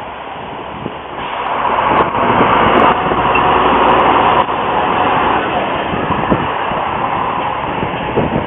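Harzer Schmalspurbahnen class 187 narrow-gauge diesel railcar 187 017 and its coach passing close by: diesel engine and wheels on the rails, swelling to a loud steady rumble about a second in and easing off a little over the last few seconds.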